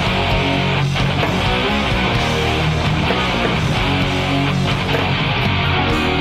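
Yamaha Revstar RS720BX electric guitar playing a distorted rock part through a Line 6 Helix dirty snapshot.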